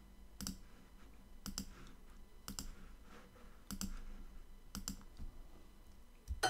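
Computer mouse button clicked five times, about once a second, each click a quick pair of ticks.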